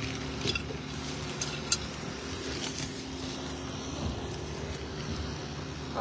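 Steady low mechanical hum from a running machine, with light rustling and one sharp click a little under two seconds in.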